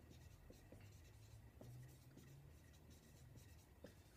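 Faint dry-erase marker writing on a whiteboard: a few light strokes and taps over near-silent room tone.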